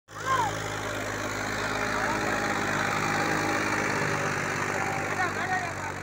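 Massey Ferguson 244 tractor's three-cylinder diesel engine running steadily under load while pulling an 11-tine cultivator through the soil.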